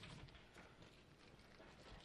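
Near silence: room tone with a few faint taps near the start.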